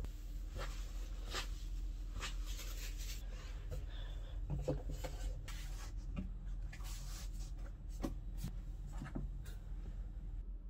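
Items being handled and set down on a desk: a string of light knocks, taps and rubbing noises, among them a plastic keyboard and mouse being placed.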